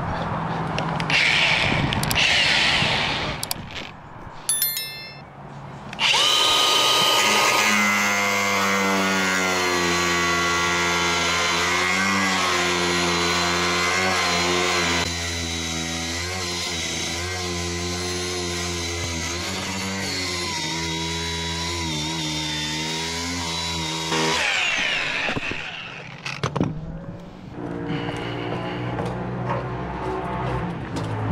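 Cordless angle grinder cutting into fibreglass. It spins up about six seconds in, then runs with a whine that dips and recovers as the disc bites, and winds down a few seconds before the end.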